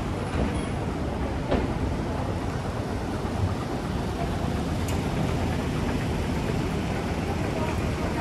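City street traffic: a steady low rumble of engines, with a car driving past close by as it begins. A single sharp click about one and a half seconds in.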